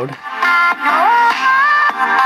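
Electronic pop song with singing played through an IBM ThinkPad A31's built-in laptop speakers: thin, with no bass, and turned up to quite loud about half a second in.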